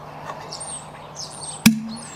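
Lugworm bait pump's plunger being pulled up against suction, with one sharp pop about a second and a half in; the suction is the sign that the nut is now tight enough on the plunger's seals. Birds chirp faintly.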